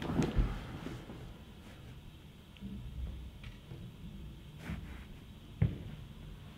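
Quiet room with faint shuffling movement as a person steps into place, and one short sharp knock a little before the end.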